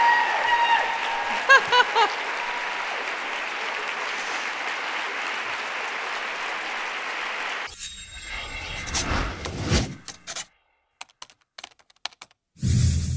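Audience applauding steadily, with a few short voices or laughs over it early on. The applause cuts off abruptly about two-thirds of the way through, and a run of sharp clicks like typing follows, with a couple of louder thumps between gaps of silence.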